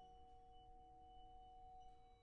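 Vibraphone ringing softly: two pure, steady tones held through a hush in the band.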